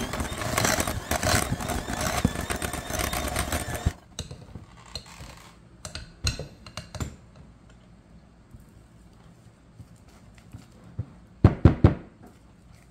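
Electric hand mixer running, its beaters whipping whipped topping into a cream cheese and peanut butter mixture in a glass bowl, then switched off about four seconds in. A few scattered clicks follow, and near the end a quick cluster of sharp knocks, the loudest sounds here.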